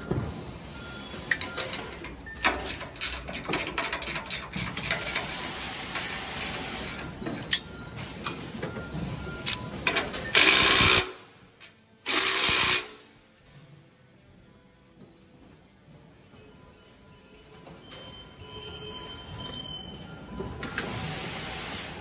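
Cordless impact driver hammering in two short, loud bursts, about ten and twelve seconds in, as bolts on the fan's mounting bracket are run tight. Before that, steel parts and hardware click and rattle as they are handled.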